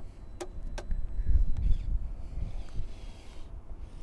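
LEGO Technic plastic body panels clicking into place twice as the rear clamshell is pressed back on. Underneath runs an uneven low rumble of wind on the microphone.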